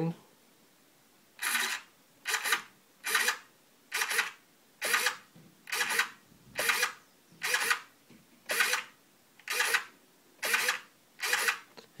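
Airtronics 94761Z digital servo whirring through its gears in about a dozen short moves, roughly one a second, each swinging away and back to centre during a centering test.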